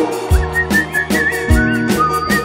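Live band music: a steady drum beat with bass and keyboard chords under a high, wavering whistle-like lead melody with vibrato.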